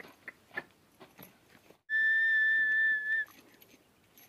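A single steady, high-pitched whistle held at one pitch for about a second and a half, starting about two seconds in. Faint scattered clicks come before it.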